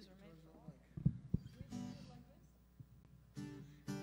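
Acoustic guitar being handled and strummed: two low knocks about a second in, then a chord rung out near the middle and again near the end.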